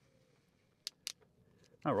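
Two short, sharp plastic clicks about a quarter of a second apart from a red plastic MC4 spanner slipping on the connector's gland nut, the sign that the nut is fully tightened.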